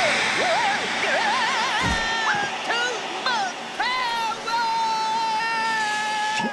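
Cartoon vacuum cleaner running on full suction, a rushing noise, with a wavering pitched whine over it that settles into a held tone about four seconds in; a low thump about two seconds in.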